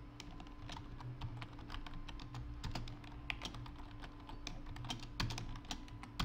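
Computer keyboard being typed on: a fast, irregular run of key clicks, faint, with a steady low hum underneath.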